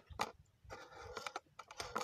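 Faint, irregular clicks and taps, scattered unevenly through the pause.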